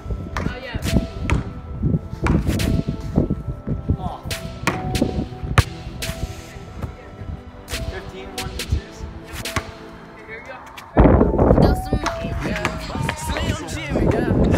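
Basketball bouncing on an asphalt driveway, a series of sharp, irregular slaps, over faint background music. About eleven seconds in, loud music cuts in.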